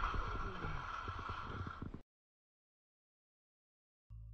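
Close, noisy rumble of movement over snow, dotted with many small crackles, that cuts off suddenly about two seconds in and gives way to dead silence.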